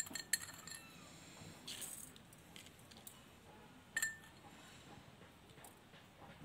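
Small glass jar clinking as it is handled: sharp clinks near the start and about four seconds in, the later one ringing briefly, with a short rustle about two seconds in as MSG crystals are shaken out.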